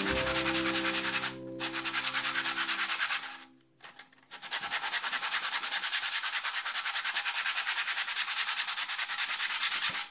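A small scroll-sawn plywood cutout being hand-sanded on sandpaper wrapped around a block, in quick back-and-forth rasping strokes, several a second. There is a short break about a second and a half in and a longer one around four seconds in, before steady strokes resume.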